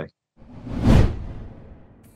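Transition whoosh sound effect: a rushing swell that builds to a peak about a second in and then fades away.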